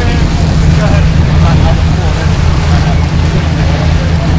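Sportfishing boat's engines running steadily under way, a loud, even low drone, with the rush of water in the wake.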